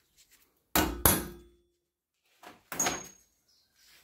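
Sharp metal-on-metal knocks at a steel bench vise, in two pairs, the louder pair about a second in and a second pair near three seconds, each with a brief ringing decay.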